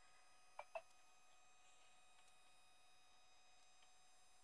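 Near silence: quiet room tone with two faint, very brief blips a little over half a second in.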